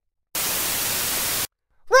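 Radio static sound effect: a burst of even hiss about a second long that switches on and off abruptly, marking a transmission over a two-way radio.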